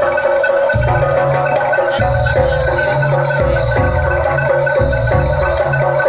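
Live Javanese gamelan music accompanying a jaranan dance: bronze metallophones ringing a sustained melody over deep, heavy drum strokes.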